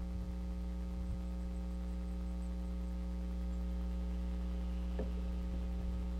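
Steady electrical mains hum with a ladder of buzzing higher overtones, and a couple of faint knocks about a second in and about five seconds in.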